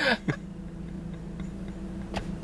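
A brief vocal sound at the very start, then a pause filled by a steady low hum inside a car's cabin.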